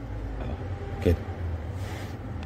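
A steady low machine hum, with one short spoken word about a second in.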